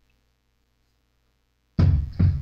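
Near silence, a sudden total drop-out of sound, then a man's voice starts speaking near the end.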